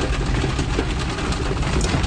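Rain pattering on a car's roof and windows, heard from inside the cabin as a dense, even hiss of fine ticks over a steady low rumble.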